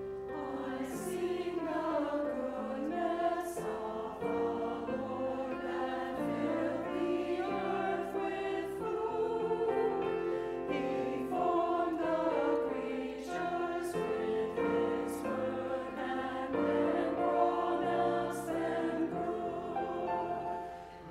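Mixed church choir of men's and women's voices singing in parts, the words' s-sounds standing out crisply.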